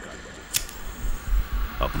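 A single sharp click about half a second in, followed by a few low thumps, then a man's voice starting to speak near the end.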